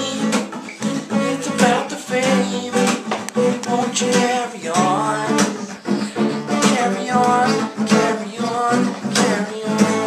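Acoustic guitar strummed, chords played in a steady repeating rhythm.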